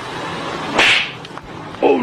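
A single loud slap about a second in, one sharp smack that is the loudest sound here, over steady street noise; a man's startled 'oh' follows at the very end.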